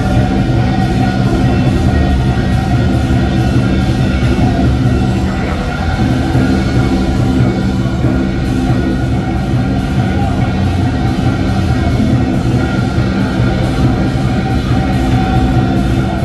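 Loud, continuous traditional Chinese band music with a steady beat, played for the dancing giant deity puppets.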